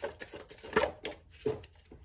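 Tarot cards being shuffled and handled: a few light, irregular taps and slaps of the deck.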